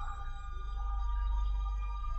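Ambient electronic background music: a deep low drone that swells and then fades, under sustained steady high tones.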